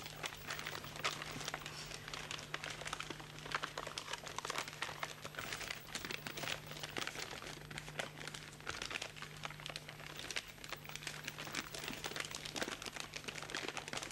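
A sheet of paper crinkling and rustling in the hands as it is folded and creased into an origami shape, with many irregular crackles. A steady low hum runs underneath.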